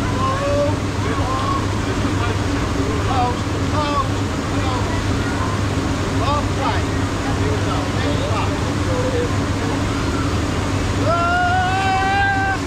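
Busy outdoor pool ambience: scattered chatter of many voices over a steady low hum and a noise haze. Near the end, a person's long rising shout.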